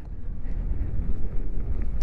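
Wind buffeting the microphone and tyres rumbling over a gravelly dirt road as an electric beach cruiser rolls along: a steady low rumble.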